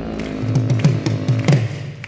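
Live progressive metal band playing: a held chord fades under about five drum hits, roughly three a second, with low tom-like thumps that drop in pitch. The sound thins out near the end.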